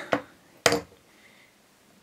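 A single sharp click from the plastic pen tube and glass flask being handled, about two-thirds of a second in, then quiet room tone.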